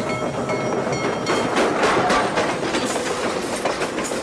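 Nickel Plate Road No. 587, a 2-8-2 Mikado steam locomotive, running past close with its train, the wheels clacking over the rail joints from about a second in. It is loudest about two seconds in.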